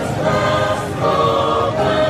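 Background music of a choir singing, several voices holding long notes together.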